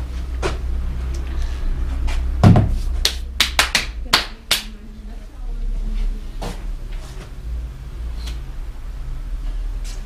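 Knocks and clicks of things being handled on workshop shelves: a heavy thump about two and a half seconds in, then a quick run of sharp clicks and taps, with scattered taps after, over a steady low hum.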